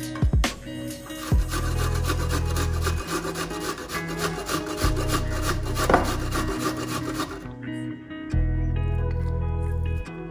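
A peeled onion being grated on a stainless steel box grater: a quick, steady run of rasping strokes starting just over a second in and stopping about three-quarters of the way through, over background music.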